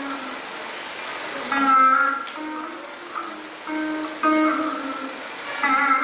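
Saraswati veena playing Carnatic music in raga Surati: separate plucked notes that ring on and slide in pitch between notes.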